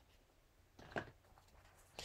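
Near silence, broken by one short, soft click about halfway through as a plastic ink pad is handled.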